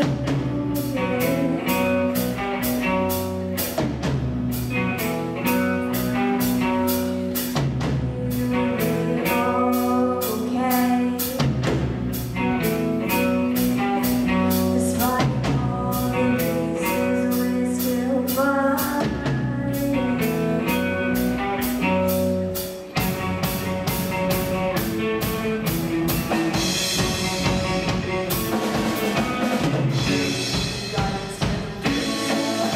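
A live rock band: a girl singing over electric guitar, bass guitar and a drum kit keeping a steady beat. About 23 seconds in the music dips for a moment, then comes back fuller and brighter.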